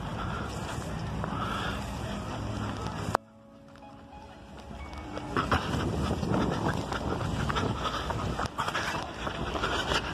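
Wind rushing over the microphone, a steady rush heaviest in the low end. It cuts off abruptly about three seconds in, then builds back up over the next few seconds.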